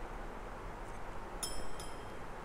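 Two light clinks of glass on glass, a glass pipette touching glassware, about one and a half seconds in, each with a short high ring. A steady low hiss and hum of room tone runs underneath.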